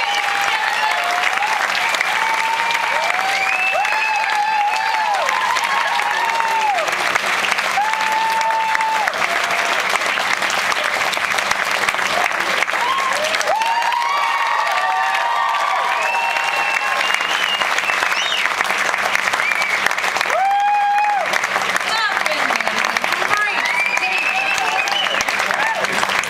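Live audience applauding and cheering, with steady clapping and many high whoops and shouts over it.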